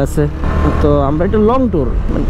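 A man talking over the steady low rumble and wind noise of a motorcycle ride.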